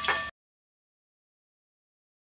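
Eggs sizzling in hot oil in a pan, cut off abruptly about a third of a second in, followed by dead silence with no sound at all.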